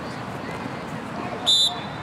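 A referee's whistle blown once in a short, loud, high blast about a second and a half in, the signal that the play is dead, over faint background voices from the field and sideline.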